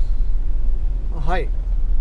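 Steady low rumble of a camper van on the move, heard from inside the cabin: engine and road noise while driving along a wet road.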